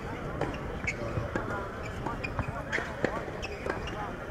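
A tennis ball bounced again and again on a hard court, a string of sharp taps about two a second, as a player prepares to serve. Faint voices sound in the background.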